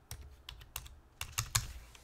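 Computer keyboard typing: a quick run of about eight key presses over a second and a half.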